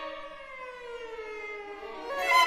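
Bowed strings of a string quartet sliding slowly downward in pitch in a long glissando that sounds like a siren.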